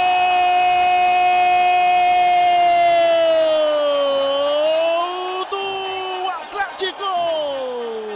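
A Brazilian football commentator's long, held goal cry ("Gooool"): one sustained note held steady for about four seconds, dipping and rising again, breaking off briefly and then sliding down in pitch near the end.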